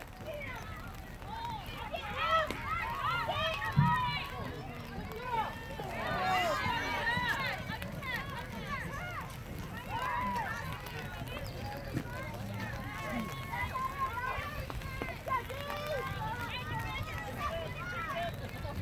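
Many overlapping high-pitched voices shouting and calling across a girls' lacrosse field, busiest from about two to eight seconds in. A single sharp knock close to the microphone about four seconds in.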